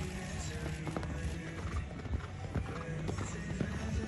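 Background music with the hoofbeats of a horse landing over a fence and cantering on sand, heard as irregular knocks under the music.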